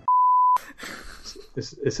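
A single steady electronic beep, one pure tone lasting about half a second, then a man's voice begins speaking near the end.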